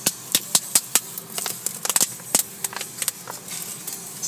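Irregular sharp clicks and taps, several in quick succession in the first second and more scattered after, over the low steady hum of a car engine running in the cabin.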